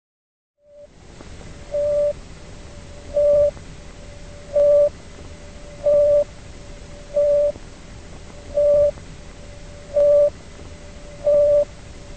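A modified recording of the Sputnik satellite's radio beeps: a short, steady beep of one pitch repeating about every second and a half, eight times, over a steady radio hiss that starts about a second in.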